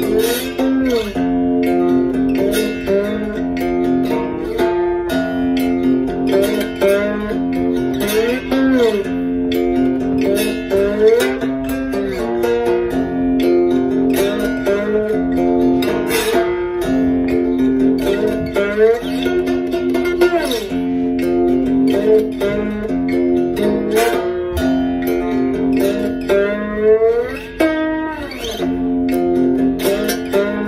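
Cookie tin banjo played with a slide: fingerpicked notes that glide up and down in pitch over a steadily ringing low drone note.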